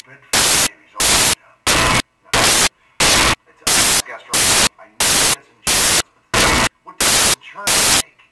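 Loud bursts of static hiss repeating about three times every two seconds, each cutting off sharply, with faint dialogue audible in the gaps between them.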